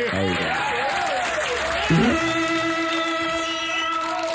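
Synthesizer swooping up and down in pitch, then holding one steady note from about two seconds in, heard on an FM radio broadcast recording.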